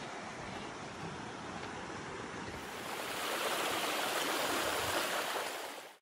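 Steady rushing of a shallow stream running over rocks, louder and brighter from about three seconds in, then cutting off abruptly just before the end.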